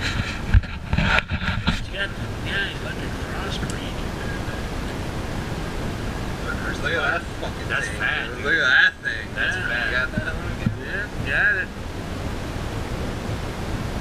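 A steady rushing noise with a few knocks and bumps in the first two seconds as the camera is handled, then indistinct voices and laughter from about seven to twelve seconds in.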